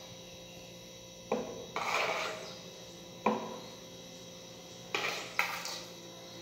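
Metal spoon clinking against a glass dessert bowl and a pan while caramelized banana is spooned out: a few separate sharp taps, with a short scrape about two seconds in.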